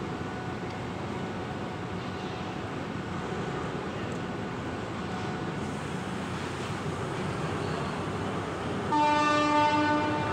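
Ordinary passenger train standing at a halt, with a steady rumble, then its horn sounds one loud, single-pitched blast about nine seconds in.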